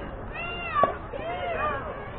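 High-pitched children's voices calling out, with one sharp impact of a pitched baseball a little under a second in, the loudest sound.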